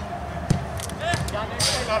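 A football kicked during play: a sharp thud about half a second in, then a softer second knock just after a second, with players' voices in the background.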